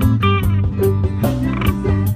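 Live reggae band playing, picked up close from the stage floor: a strong, steady bass line under drums with regular cymbal strokes and electric guitar.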